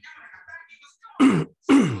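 A man clearing his throat twice, two short loud rasps about half a second apart, each dropping in pitch.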